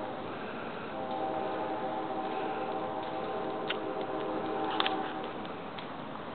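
Brush fire burning with a steady rush, two sharp pops a little over a second apart in the middle. Through most of it a steady droning tone with several pitches at once holds for about four seconds, then fades.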